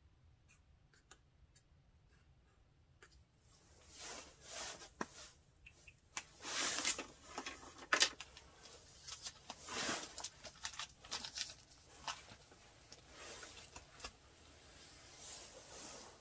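Faint pen strokes on paper at first, then irregular rustling and scraping in bursts as writing tools are handled off the page and the pen is swapped for a pencil, the sharpest about eight and ten seconds in.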